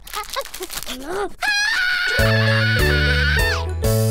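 A cartoon dog's short whining yelps, sliding up and down in pitch. About one and a half seconds in, a rising whistle leads into a music sting: a held, wavering high tone over bass notes that drops away near the end.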